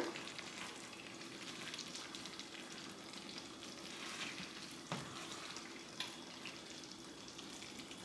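Beef gravy sizzling faintly in a skillet on the stove while a spatula stirs it, with two light taps of the spatula against the pan about five and six seconds in.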